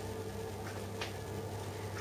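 Quiet kitchen with a steady low hum, and a couple of faint crackles about a second in as wooden skewers are pushed into the crust of a baguette.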